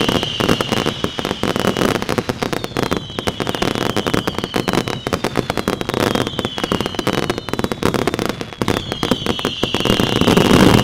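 Consumer firework cakes firing in rapid succession, a dense stream of pops, bangs and crackling bursts. High whistles falling slightly in pitch rise over it every couple of seconds.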